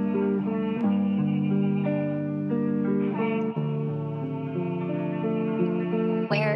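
Opening of a boom bap hip-hop instrumental in G minor: a melodic sample of held, guitar-like notes that change chord every second or so, with no drums yet.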